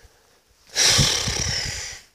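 A long, loud, breathy exhale close to the microphone, like a heavy sigh, starting just under a second in and lasting over a second.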